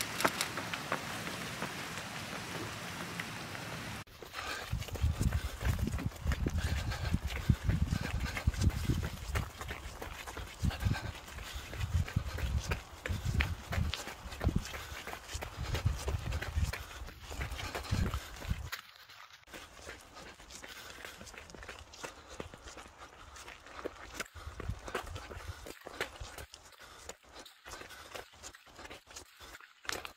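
Running footsteps on a gravel path, with heavy low rumbling from wind on the microphone through the first half. In the second half the rumble drops away and the footfalls come through as a quick run of crunching clicks.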